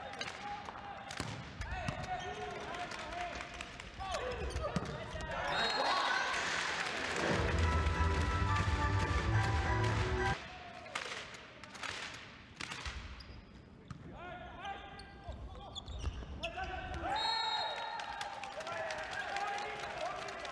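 Sounds of a volleyball match in a gymnasium: the ball is struck sharply many times amid shouting voices, with music from the hall's speakers. The loudest stretch, music with a deep low end, cuts off abruptly about ten seconds in.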